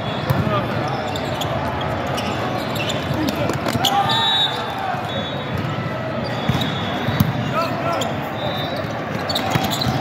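Volleyball tournament hall: a constant hubbub of many voices from players and spectators, with sharp knocks of volleyballs being hit and bouncing, and a few short high-pitched squeaks or whistle tones about four seconds in and again near seven seconds, all echoing in the large hall.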